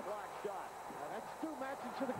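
Faint voices in the background, quieter than the commentary around them, with no distinct game sound such as a ball bounce standing out.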